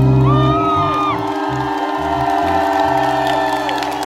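Live rock band playing held chords, with a crowd cheering and whooping over the music.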